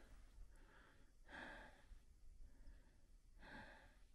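Near silence with a man's faint, slow breathing close to the microphone, a soft breath about every two seconds.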